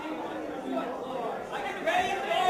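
Indistinct crowd chatter: many people talking at once in a hall, with no single voice standing out.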